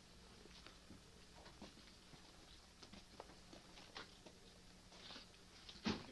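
Near silence: room tone with a faint steady low hum and scattered faint ticks and rustles, and one sharper click just before the end.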